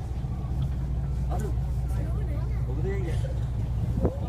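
A boat's engine running with a steady low hum, with people's voices in the background.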